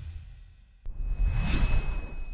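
Title-sequence whoosh sound effects: one whoosh fading away, a sharp click a little under a second in, then a second whoosh with a deep low end swelling up and fading out.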